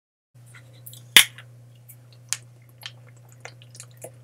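Plastic water bottle being handled and its screw cap twisted off: a sharp crack about a second in, another a second later, and softer plastic clicks and crinkles, over a steady low hum.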